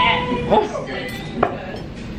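A metal fork knocking against a small skillet twice, with sharp clinks about half a second in and again near a second and a half, as a piece of cornbread is cut and taken out of the pan.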